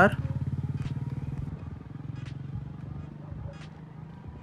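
Engine of a passing vehicle: a fast, evenly pulsing low drone that is loudest at the start and fades steadily as it moves away.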